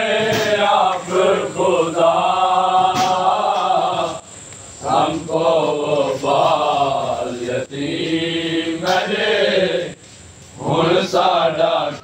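Men's voices chanting a noha, a Shia Muharram lament, in long drawn-out sung lines. There are short breaks a little after four seconds and again around ten seconds.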